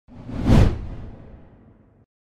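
A whoosh sound effect for the channel logo intro: it swells to a peak about half a second in, with a deep low end, then fades away over the next second and a half.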